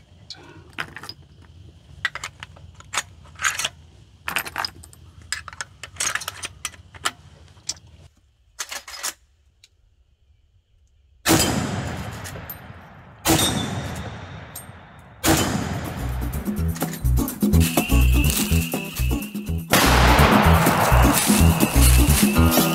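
Metallic clicks of .45-70 cartridges being pushed into the loading gate of a Marlin 1895 lever-action rifle, then a short pause. Two loud .45-70 rifle shots about two seconds apart follow, each with a long decaying tail. A third bang comes at about 15 seconds, and music with a steady beat starts just after it.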